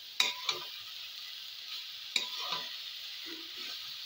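Red amaranth leaves sizzling in a metal wok while a spatula stirs them: a steady frying hiss, with a few sharp scrapes and knocks of the spatula on the pan near the start and about two seconds in. The greens are being stir-fried until their raw smell is cooked off.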